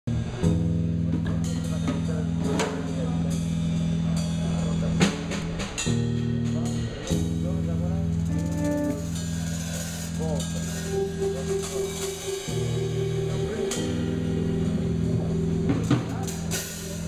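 A six-piece band jamming on a riff: held low chords and drum kit hits, with a brief break around five seconds in. From about eleven seconds in a wavering tone with a quick vibrato sits above the band, which is the theremin.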